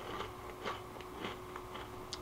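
A person chewing a crunchy snack close to the microphone: four faint crunches about every half second.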